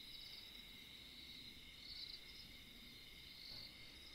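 Faint insect chirping in a very quiet room: a steady high-pitched trill with short chirps every second or so.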